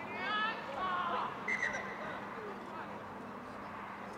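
Distant voices of players calling out across an open sports field, a few shouts near the start, over steady outdoor background noise.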